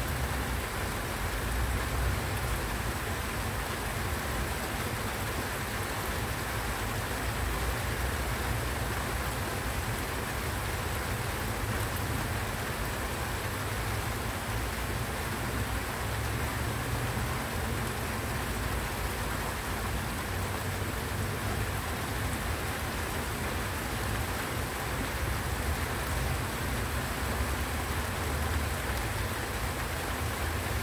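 Steady rain falling on dense broad-leaved foliage such as banana leaves, an even hiss of drops with a low rumble underneath.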